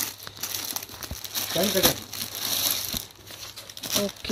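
Clear plastic packaging crinkling and rustling as a packed saree is handled and opened.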